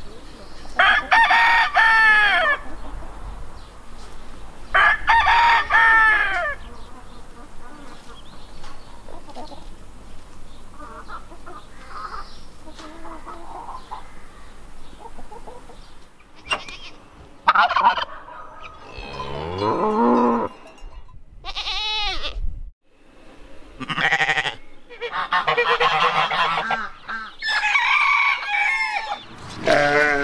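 Appenzeller Barthuhn rooster crowing twice, about a second in and again about five seconds in, each crow about a second and a half long. In the second half, chickens cluck and call in a run of shorter, varied calls.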